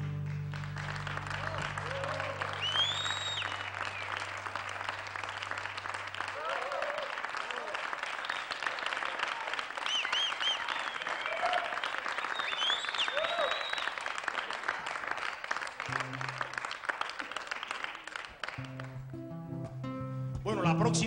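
A concert audience applauding with whistles and shouts after a salsa number. The last chord's low bass notes ring out for the first few seconds. A couple of low instrument notes sound near the end.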